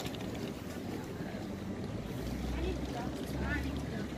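Outdoor pedestrian-street ambience with indistinct voices of passers-by. Wind buffets the microphone from about two seconds in until just before the end.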